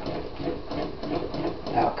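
Wooden spoon stirring a thick, melted chocolate mixture in an enamel pot, with repeated quick scraping strokes against the pot.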